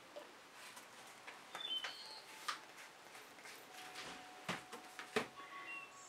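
Faint handling sounds of a plastic squeeze bottle of acrylic paint being squeezed onto a silicone mat: a few light clicks and taps with short high squeaks.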